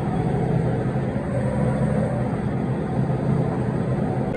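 A motor running steadily nearby: a continuous low drone with no change in speed.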